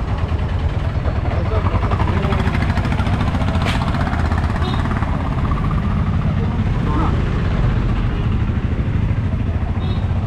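Street traffic: auto-rickshaw and scooter engines running close by in a steady low rumble, with a sharp click a little under four seconds in.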